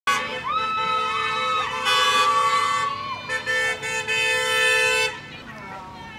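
Car horns honking in long held blasts, more than one at a time, as vehicles drive past, with people's voices shouting over them. The horns stop about five seconds in.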